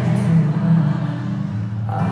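Loud live pop music through an arena sound system, dominated by a heavy bass line that shifts between notes, with fuller sound coming in near the end.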